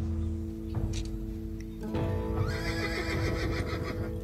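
A horse whinnying for about two seconds, starting about halfway through, over steady background music.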